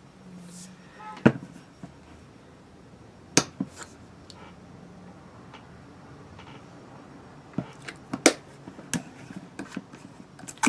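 A plastic shampoo bottle being handled and opened to be smelled: scattered sharp clicks and knocks of the cap and bottle, the loudest about a second in and a cluster near the end, over a low steady hum.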